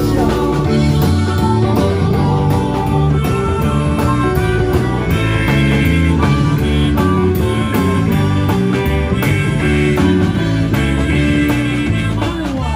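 Live blues-rock band playing an instrumental break: a harmonica played into a vocal microphone over electric guitars, bass and drums.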